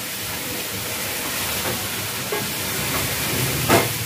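Food sizzling in a steel pot on a gas stove, a steady hiss, with a few light knocks of a wooden spoon stirring against the pot; the last knock, near the end, is the loudest.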